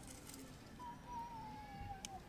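An animal's single drawn-out call, starting about a second in and sliding slowly down in pitch for more than a second.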